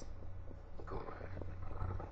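Room tone between speakers in a chamber broadcast: a low steady hum with faint, indistinct background noise.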